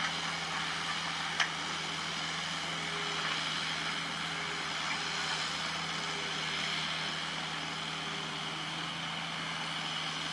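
Crawler excavator's diesel engine running steadily as it digs. A faint whine comes and goes through the middle, and there is a single sharp knock about a second and a half in.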